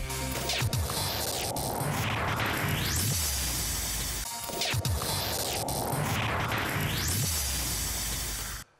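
Glitchy electronic bumper music for a TV programme: static-like noise with rising whooshes and falling low tones. The same phrase of about four seconds plays twice.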